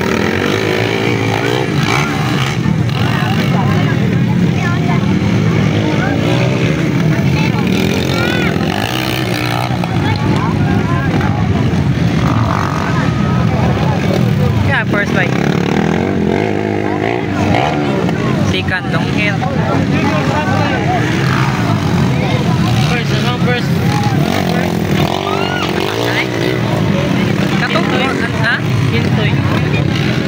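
Motorcycle engines running and revving on a dirt track, pitch rising and falling as the bikes accelerate and slow through the turns, over a steady background of voices.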